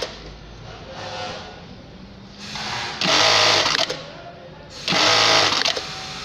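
Electronic industrial bartack sewing machine running two short tacking cycles, each about a second long, about three and five seconds in, as it sews belt loops onto denim jeans. A low hum continues between the cycles.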